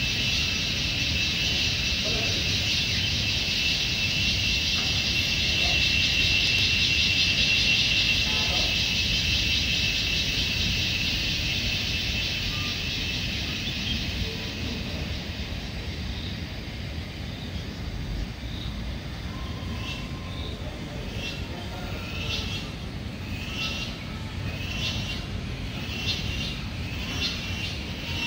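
A steady, high, pulsing insect chorus from the surrounding forest, loud for the first dozen seconds and then fading. From about twenty seconds in, a bird repeats a short falling call about once a second. A low background rumble runs throughout.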